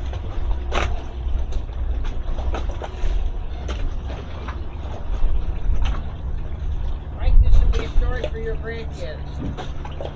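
Wind rumbling on the microphone aboard a small boat, with knocks and clatter of gear on deck. About six seconds in, a steady low engine hum comes in and carries on.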